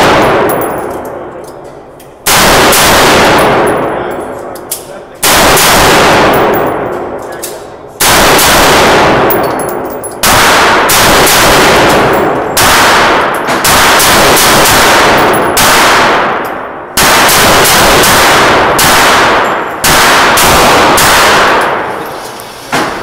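AR-style rifle shots at an indoor range, over a dozen in all. The first few come singly, about three seconds apart, then a quicker string from about halfway through at roughly one shot a second or faster. Each loud crack is followed by a long echoing decay off the range walls.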